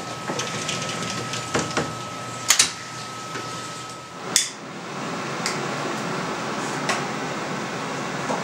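Indoor room noise with a thin steady whine that stops about four seconds in, broken by several sharp clicks and taps. The loudest are a double click about two and a half seconds in and a single sharp click just after the whine stops.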